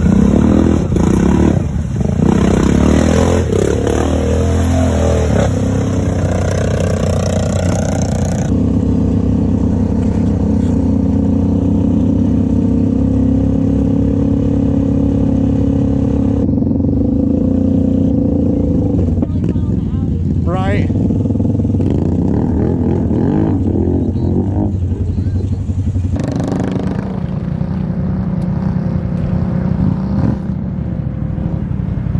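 ATV engines running and revving, with splashing as a quad ploughs through deep muddy water, then quads riding along a gravel trail. The sound changes abruptly several times as the shots change.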